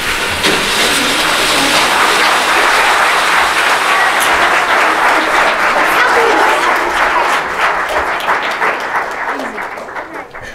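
Audience applauding, with voices mixed in; the clapping dies away near the end.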